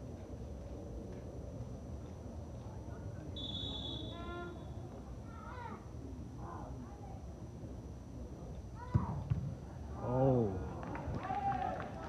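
Stadium ambience at a soccer match: scattered shouts from players and spectators over a steady murmur, a short high referee's whistle blast about three and a half seconds in, a sharp knock about nine seconds in, and a loud shout just after.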